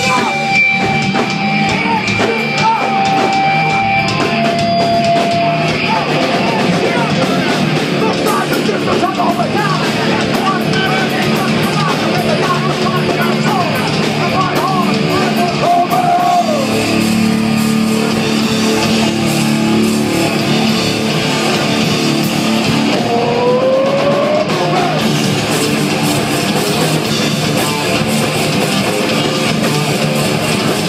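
New York hardcore band playing live at full volume: distorted electric guitars, bass and drums, recorded through a phone's microphone.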